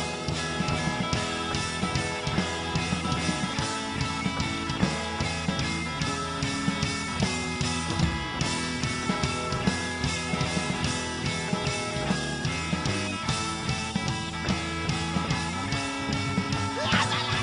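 Live rock band playing an instrumental passage between sung lines: guitar over a drum kit keeping a steady beat.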